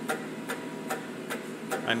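Faint, regular ticking, about two ticks a second, over a low steady background; a voice starts just at the end.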